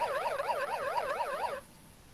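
Electronic correct-answer sound effect from a Wordwall gameshow quiz: a warbling tone sweeping up and down about five times a second, cutting off suddenly about one and a half seconds in.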